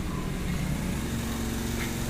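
Steady low mechanical hum, with a faint steady tone joining about a second in.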